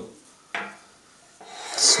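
A small metal mandrel set down on a metal bench top with a single knock about half a second in, then metal parts rubbing and being handled.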